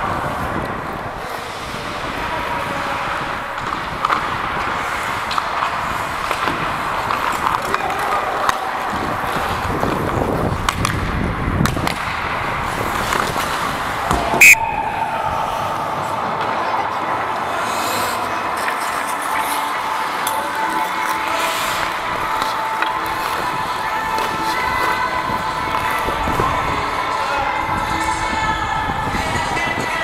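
Ice hockey play heard from a skating referee: skate blades scraping the ice and scattered stick-and-puck knocks, with one sharp crack about halfway through. Music plays in the background.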